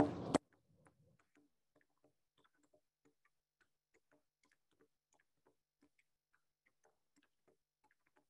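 Faint quick taps, about four a second, of hands playing a rigid stalk of bull kelp as a percussion instrument. A short louder burst comes right at the start.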